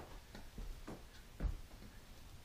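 A hand spreader scraping glue across a wooden tabletop substrate. It makes short, irregular strokes about two a second, with one louder stroke about one and a half seconds in.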